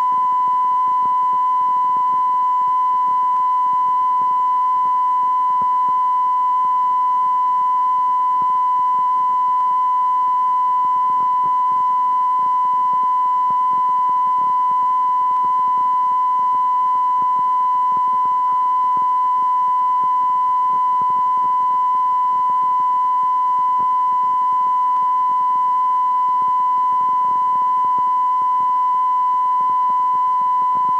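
Continuous 1 kHz television test tone, held at one steady pitch without a break, over faint hiss.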